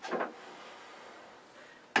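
Mostly a faint, steady hiss of room tone, with one short soft sound just after the start.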